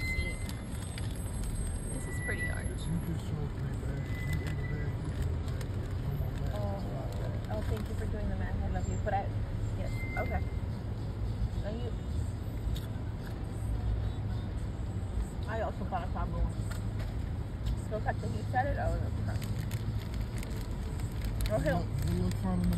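Steady low rumble of a car moving slowly, heard from inside the cabin, with faint low voices in the background.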